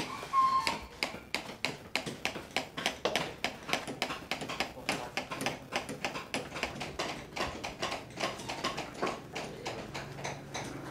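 Many small hammers tapping on chisels and punches, carving cowhide for sbek shadow-puppet panels: irregular, overlapping taps, several a second, from more than one worker.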